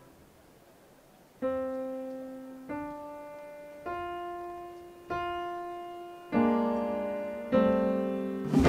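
Piano playing a slow, spare introduction: after a brief hush, six separate notes and chords struck about a second apart, each left to ring and fade, the last two fuller chords.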